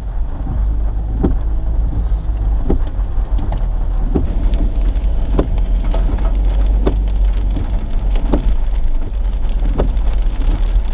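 Heavy rain hitting a car's windshield and roof, heard from inside the cabin over a steady low rumble of the moving car. A short knock comes about every second and a half, in time with the windshield wipers sweeping.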